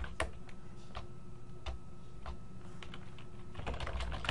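Typing on a computer keyboard: a few scattered keystrokes while a typo is deleted and corrected, then a quicker run of typing near the end.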